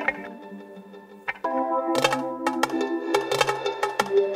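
A 1990s-style hip-hop/soul instrumental sample being auditioned from a sample pack. The first sample cuts off at the start and the sound drops lower. A new sample starts about a second and a half in, with bass and sharp drum hits coming in around the two-second mark.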